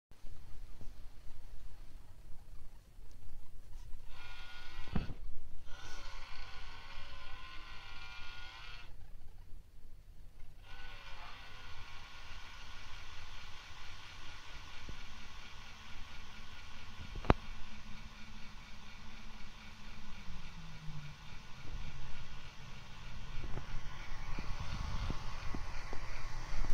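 Mini projector making a moaning noise: a wavering whine of several pitches over a low hum, starting about four seconds in, breaking off twice, then settling into a steadier whine. The owner doesn't think it is meant to do that.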